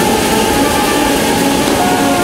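Hot-air balloon's propane burner firing: a loud, steady rush of noise, with background music playing underneath.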